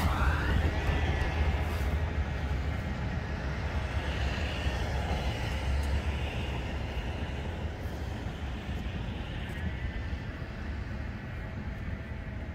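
Steady outdoor rumble of road traffic passing on a nearby road, swelling about a third of the way in and fading slowly toward the end.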